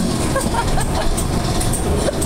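Dark-ride car rolling along its track, a steady low rumble with a few light rattles and clicks.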